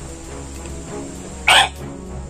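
Background music with steady held tones; about one and a half seconds in, one short, loud throat noise from a man swallowing a raw termite queen whole without water, the thing catching in his throat.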